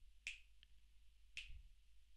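Finger snaps, two about a second apart, counting off the tempo for a drum exercise.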